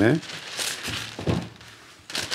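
Clear cellulose film crinkling as it is pulled from its roll and handled, with a dull knock among the rustling.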